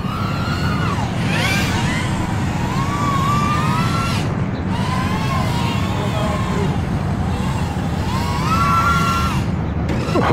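Tiny whoop drone's small brushless motors and props whining, the pitch sweeping up and down with throttle changes over a low rumble.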